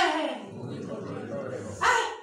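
A woman's voice amplified through a microphone: a drawn-out phrase slides down in pitch and fades at the start, then about a second and a half of low background noise, and her voice starts again near the end.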